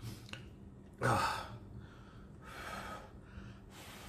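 A man blowing and breathing out hard through pursed lips to cool a forkful of very hot ramen noodles. There is one sharp, loud breath about a second in, then softer blows.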